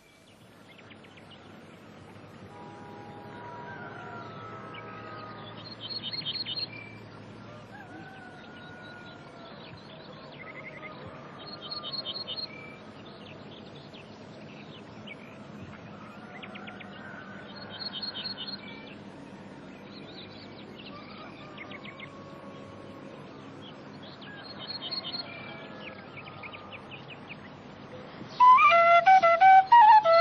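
Countryside ambience fading in over the first few seconds: several birds singing. One bird's short, rapid trill repeats about every six seconds and is the loudest sound, with fainter whistled calls between.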